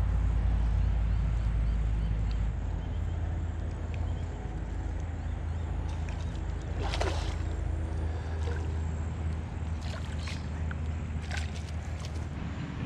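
A hooked carp splashing at the surface of shallow creek water as it is played to the bank on a fly rod, with one louder splash about seven seconds in. A steady low rumble runs underneath.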